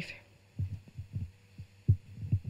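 Handling noise on a handheld microphone: a string of soft, irregular low thumps, the loudest near the end.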